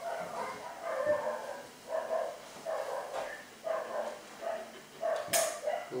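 Dog giving a run of short, pitched whining yips, about one or two a second, with a brief sharp noisy burst near the end.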